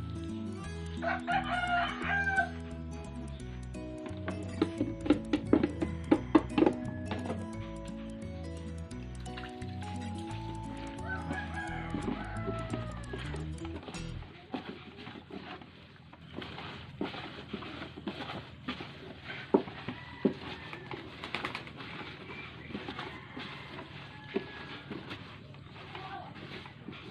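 Background music with a rooster crowing over it, about a second in and again about eleven seconds in. About halfway through, the music cuts off. Hands mixing a feed mash of chopped greens and rice bran in a plastic bucket then make soft, irregular crackling and rustling.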